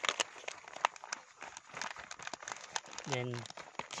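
Bubble-wrap plastic bag crinkling in a rapid run of short crackles as a stick stirs seeds inside it; a voice speaks near the end.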